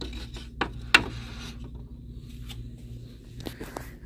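Thin unfinished wooden slats being handled and shifted: a couple of sharp wooden clacks about a second in, with rubbing and scraping between, and a few lighter knocks near the end.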